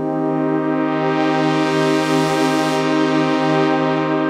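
Crumar Orchestrator synthesizer holding a sustained chord on its brass voice. The tone brightens about a second in and darkens again near three seconds as its Moog-type filter is swept open and closed with the foot pedal.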